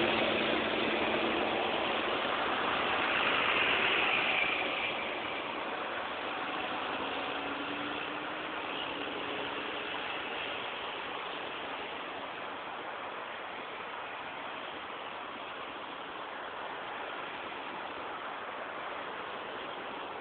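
Highway traffic noise. A vehicle goes by loudest about four seconds in, then a fainter, steady hiss and rumble of passing traffic.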